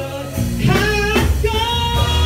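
A female soul singer sings live into a handheld microphone over band accompaniment. She glides through a short phrase, then holds a long note from about halfway through.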